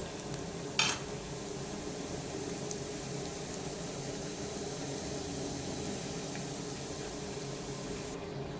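Urad dal lentils frying in oil in a steel saucepan on a low flame: a steady, gentle sizzle. A single short click sounds about a second in.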